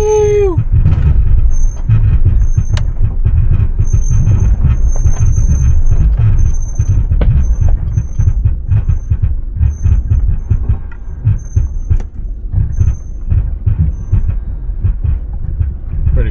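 A 2004 Range Rover HSE creeping down a rough dirt track under hill descent control, heard from inside the cab: a steady low rumble of tyres and running gear, with many small knocks and rattles as it rolls over the ruts.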